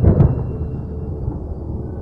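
Low, steady rumble from a film soundtrack's sound design, with a heavy thud right at the start.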